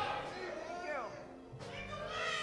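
A single voice singing wordlessly in long sliding notes, with a steep downward slide in pitch about a second in.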